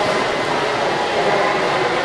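Steady, even background din of a busy railway station hall, with no single sound standing out.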